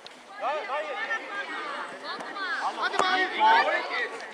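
Many high voices shouting and calling over one another, with a single sharp knock about three seconds in.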